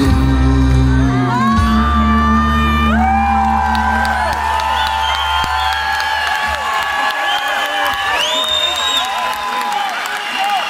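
A live band's closing chord rings out and dies away over the first few seconds, while a large audience cheers, whoops and whistles loudly.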